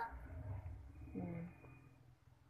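A quiet lull with a faint low rumble in the first second, then one short murmured "ừ" about a second in.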